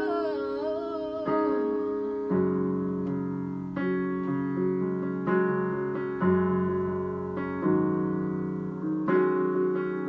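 Yamaha digital piano playing slow sustained chords. A woman's sung note wavers and trails off in the first two seconds, then the piano carries on alone, with a new chord struck about every second and a half.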